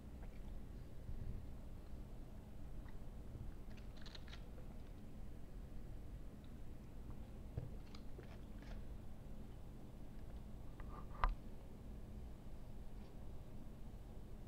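A person chewing a mouthful of bacon burger close to the microphone, with faint crunches and soft mouth clicks. One sharper click about eleven seconds in.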